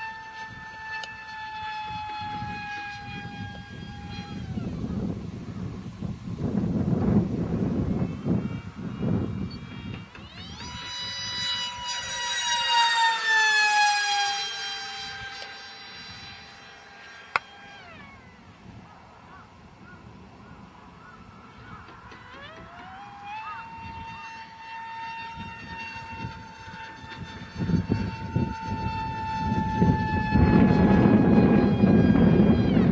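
High-pitched whine of the Funjet's HXT 2845 2700kv brushless motor on 4S, spinning an APC 5x5 propeller in fast flight. The whine fades and returns as the plane moves about, and is loudest mid-way on a close pass, where its pitch falls. Bursts of low wind rumble on the microphone come in between.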